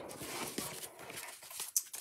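Handmade cardstock greeting cards being slid across a tabletop and gathered together by hand: soft paper rustling, with a few light taps near the end.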